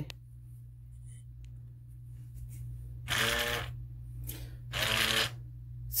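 Hadineeon automatic foaming soap dispenser's pump motor running twice in short bursts of about half a second, about three seconds in and again near the end, pushing foam out of the nozzle into a hand.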